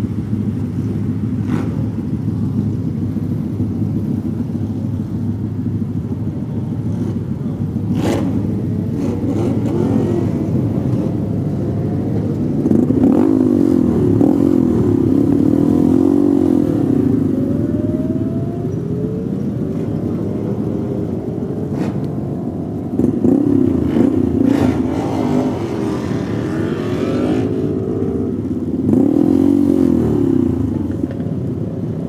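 Several motorcycle engines idling with a steady low rumble, heard through a helmet camera. Throttle blips rise and fall about halfway through and again near the end, and two sharp clicks come in the first eight seconds.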